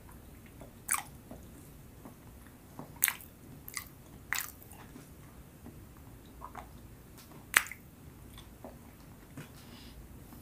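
Close-miked chewing of soft, sticky Filipino rice cakes with the mouth closed: scattered wet smacks and clicks, a few close together a few seconds in and the loudest one about seven and a half seconds in.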